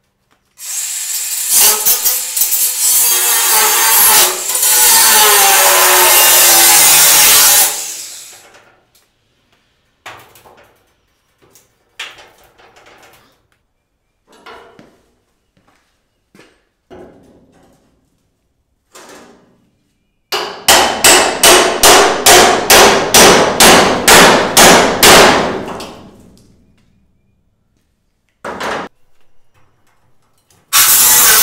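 A DeWalt 20V cordless angle grinder with a cut-off wheel cutting into a steel trailer wall. It makes one long run of about seven seconds and a shorter run that pulses about three times a second, each winding down as the wheel spins down. Between the runs come scattered metal knocks and clanks.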